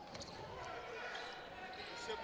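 Faint gym background noise with a basketball being dribbled on the hardwood court.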